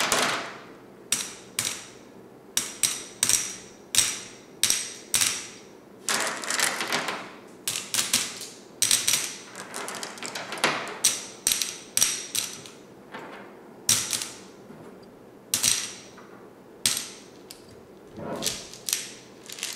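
Flat glass gems being handled, clicking against each other and the wooden tabletop in irregular sharp clicks, some in quick clusters, each with a brief glassy ring.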